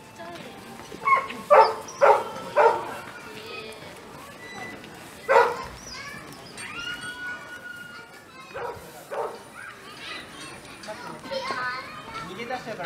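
Domestic goats bleating in short sharp calls: three in quick succession about a second and a half in and one more near the middle, with people's voices in the background.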